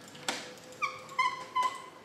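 A door's lever latch clicks, then its hinges squeak three times in short, high squeals as the door is pushed open.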